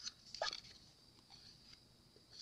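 Faint scraping and tapping of a plastic stir stick inside a mixing cup as the last mica flakes are scraped out; a few soft, scattered ticks, the clearest about half a second in.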